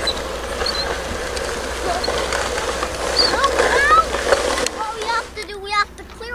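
Sand hissing and scraping as a plastic toy bulldozer's blade is pushed through it, stopping suddenly about five seconds in. Children's voices follow near the end.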